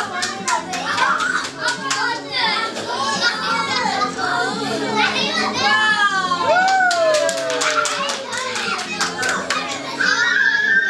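A roomful of young children shouting, laughing and cheering together, with bursts of clapping. About two-thirds of the way in, one voice gives a long call that falls in pitch.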